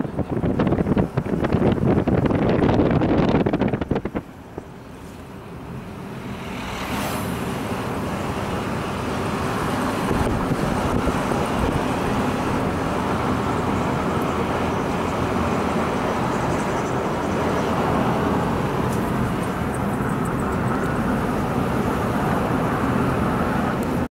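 A car driving, heard from inside the cabin: a steady mix of road and engine noise. A louder rushing noise in the first four seconds cuts off suddenly, and the driving noise then builds back up and holds steady.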